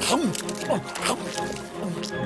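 Cartoon soundtrack: background music with short wordless vocal cries and sliding sound effects.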